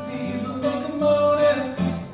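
Live solo acoustic guitar strumming with a man singing, his voice holding one long note through the middle.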